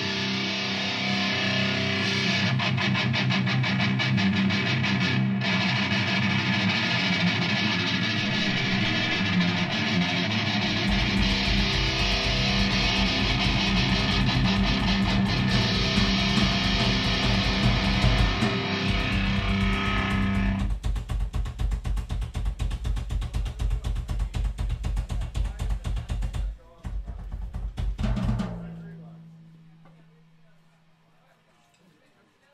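Live rock band: electric guitar and drum kit playing loud. About ten seconds in, fast bass drum strokes join. Around twenty seconds the sustained guitar falls away, leaving rapid drumming with a brief break, and the music stops a couple of seconds before the end and rings away.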